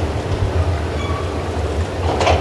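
Steady low hum with an even background hiss of room noise in a lecture hall, with no speech.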